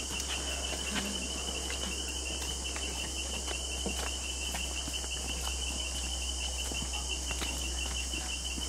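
Steady high-pitched rainforest insect chorus with a fast pulsing trill, over scattered footsteps crunching on a dirt trail as a group walks past.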